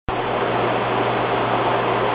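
Steady drone of running machinery in a boat's engine room: a constant low hum under an even, fan-like hiss.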